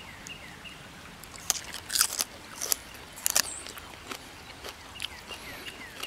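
A man biting into and chewing a raw wild leek (ramp) bulb, with several crisp crunches between about one and a half and three and a half seconds in.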